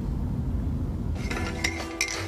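A low steady rumble of a moving car's cabin. About a second in, a teaspoon starts clinking against a ceramic mug as coffee is stirred.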